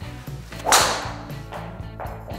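A driver swung hard and striking a golf ball: one sharp, loud crack a little under a second in, with a brief ringing tail. Background music plays throughout.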